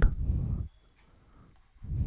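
Stylus writing on a drawing tablet: low scratching with faint clicks for about half a second at the start, then a pause, then writing again near the end.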